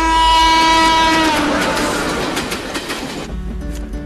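Train horn holding one long, steady note that breaks off about a second in. It gives way to the loud rushing and clatter of a moving train, which cuts off abruptly shortly before the end.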